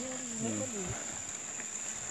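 A person's drawn-out wordless voice in the first second, sliding up and down in pitch and dropping off at the end, over a steady high-pitched drone of insects.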